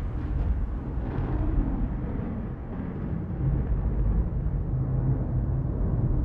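A deep, steady rumble from a cinematic logo-animation sound effect.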